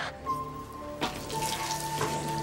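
Liquid trickling and running out of a trocar cannula pushed into a horse's chest to drain fluid, the flow thickening about a second in, over soft held notes of background music.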